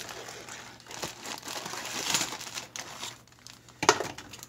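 Clear plastic packaging around the model kit's sprues crinkling and rustling as the contents are handled and taken out of the cardboard box, with small clicks throughout and a sharper tap near the end.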